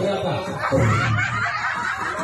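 People laughing, against voices of a crowd.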